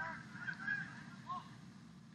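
A few faint, short distant shouts, heard over a low, steady background hum of the pool venue.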